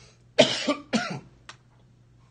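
A man coughs twice in quick succession, about half a second apart. A short click follows.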